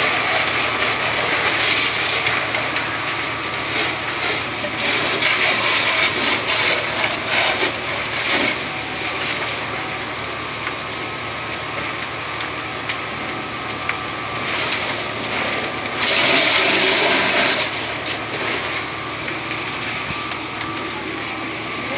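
A large fire burning through garages, crackling and popping with a dense run of sharp cracks in the first half, over a steady noise. About sixteen seconds in, a loud hiss lasts for nearly two seconds.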